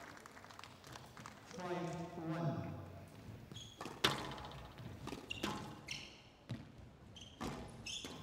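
Squash ball struck by rackets and hitting the court walls as a rally is played. The loudest is a sharp crack about four seconds in, with short high shoe squeaks on the wooden court floor between shots. A brief pitched voice sounds about two seconds in.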